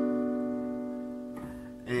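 A B minor seventh chord on an electronic keyboard, struck just before and held, fading steadily, then released shortly before the end.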